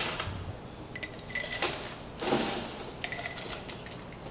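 Glassware and ice clinking in two bursts of quick, ringing clinks, about a second in and again near three seconds, with a short rattle between them.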